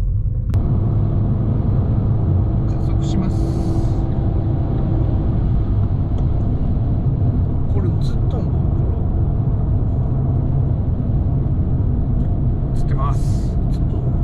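Steady engine and road rumble inside the cabin of a Fiat 500 1.2 cruising on an expressway. It comes in sharply about half a second in.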